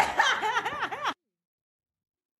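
A woman laughing in short, repeated bursts for about a second, then the sound cuts off suddenly into silence.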